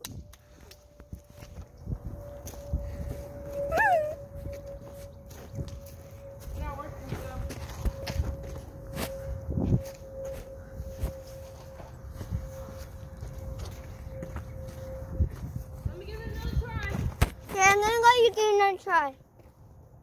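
Footsteps and the rustle and knocks of a phone carried against fleece clothing, with a faint steady tone through most of it and short high child's calls, then louder child vocalizing near the end.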